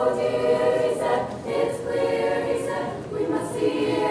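Female vocal ensemble singing together in harmony, holding chords and moving to a new chord every half second to a second.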